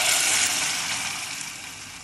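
Tomato passata pouring into hot olive oil in a stainless steel saucepan and sizzling, the hiss starting loud and dying away steadily as the sauce settles and cools the oil.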